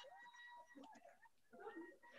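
Near silence on a video-call line, with only a few faint, indistinct sounds; the graduate's audio barely comes through.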